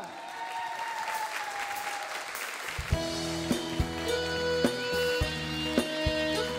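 Studio audience applauding, then about three seconds in a band starts the song's intro: electric bass and acoustic guitar notes over drums.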